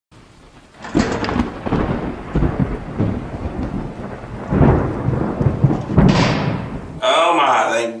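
Thunderstorm sound effect: rain with thunder, a loud crack about a second in and more claps later, the last one about six seconds in.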